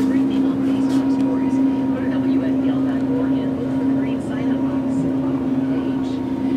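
A steady mechanical hum that holds one constant pitch, with a fainter, higher whine above it.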